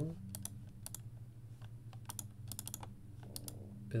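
Computer keyboard keys being tapped in short irregular runs of clicks, over a steady low hum.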